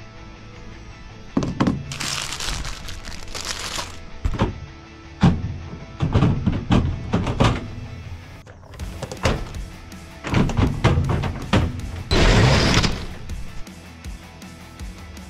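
Plastic delivery totes knocking and clattering as they are handled in the rack at the back of a delivery van: a string of sharp knocks with two longer rushes of noise, one early and one near the end. Background music plays underneath.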